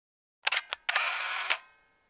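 Camera shutter sound: a few quick clicks about half a second in, then a half-second rasp that ends in a sharp click, with a short fading tail.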